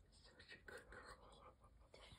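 Very faint whispering voices against near silence.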